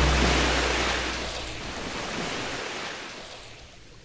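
The final crash cymbal and bass drum hit of a drum-led music track ringing out and fading away slowly. The low boom dies within the first second, and the cymbal's hiss tails off toward silence near the end.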